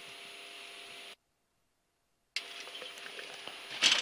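Low steady hiss with a faint hum from the jet's cockpit intercom audio during the landing rollout; it cuts out to total silence for about a second partway through, then returns with a few small clicks and a short louder burst of noise near the end.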